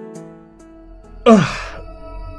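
Sustained ambient music chords, with a loud, breathy vocal groan of pain about a second and a quarter in that falls in pitch and fades within half a second.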